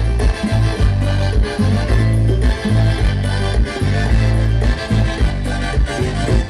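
Loud Latin dance music with a heavy bass line pulsing in a steady beat.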